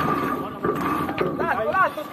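Sailing crew's voices on deck, with a short, pitched call near the end, over a steady high-pitched tone.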